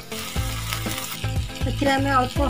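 Onion-and-spice masala sizzling in hot oil in a frying pan while a steel spatula stirs it, over background music.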